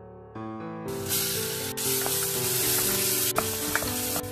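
Crushed ginger and garlic sizzling in hot coconut oil in a steel pressure cooker, the sizzle starting about a second in, with a few clicks of a spatula against the pot near the end.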